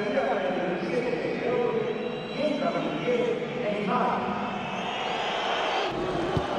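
A man speaking, like a broadcast commentator talking; no other sound stands out.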